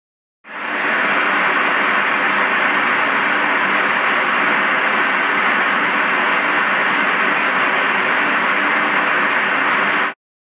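Analogue television static: a steady hiss that fades in about half a second in, after a moment of silence, and cuts off suddenly.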